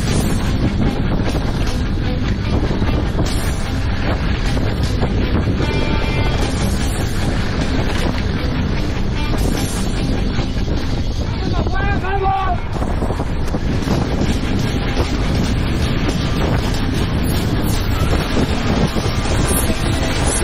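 Wind buffeting a helmet-mounted action camera's microphone, mixed with the rumble and rattle of a mountain bike running fast down a dry dirt trail. A short wavering pitched call cuts through about twelve seconds in.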